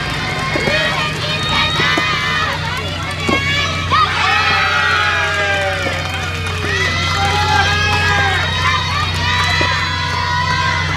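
Many overlapping high-pitched girls' voices shouting and calling across the soft tennis courts, with a few sharp knocks of rackets striking the rubber ball; a steady low hum underneath.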